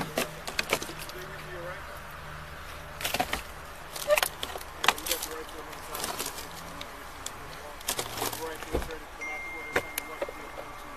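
Scattered knocks, clicks and rustles of a jostled body-worn camera and the wearer's gear, over a low steady hum and faint, indistinct voices.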